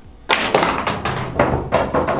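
Pool shot: the cue tip strikes the cue ball and billiard balls clack against each other and the cushions, a run of sharp knocks that starts suddenly about a third of a second in and goes on for about a second and a half.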